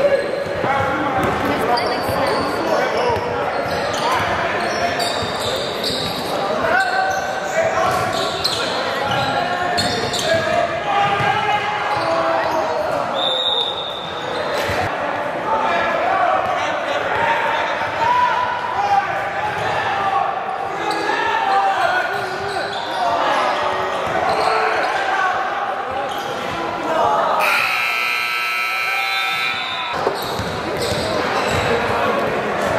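Indoor basketball game in a large, echoing gym: a basketball dribbling on the hardwood, with the indistinct shouts and chatter of players and spectators. Near the end, the scoreboard horn sounds for about two seconds, marking the end of the game.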